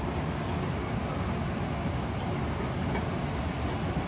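Turmeric-marinated fish pieces frying in hot oil in a nonstick pan, a steady sizzle.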